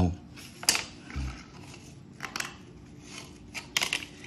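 Plastic snow brush and ice scraper being handled and set down on a concrete floor: a few sharp plastic clicks and taps, spread out, with a cluster near the end.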